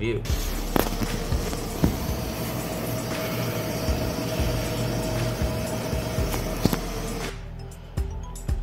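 Graphics card's 3D-printed replacement fans (Noctua-style blades) spinning up to speed with a loud rushing whir and a steady whine, an 'insane noise'; the owner judges the Noctua blade design unsuited to a GPU. The noise cuts off suddenly near the end.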